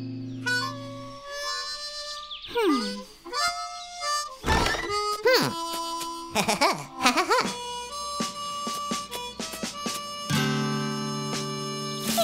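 Western-style cartoon background music led by a harmonica. It has sliding, swooping pitch effects and a few sharp hits about four to seven seconds in.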